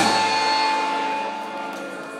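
A live rock band's chord, struck together, ringing out and slowly fading, its held notes sustaining.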